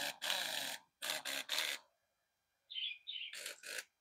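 Twin-hammer air impact wrench triggered in several short bursts, each under a second, with air hissing through it and a spinning-motor tone.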